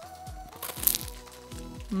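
A bite into a Choco Monaka Jumbo ice cream bar: its crisp monaka wafer shell gives a short crunch just under a second in. Background music with a steady beat plays throughout.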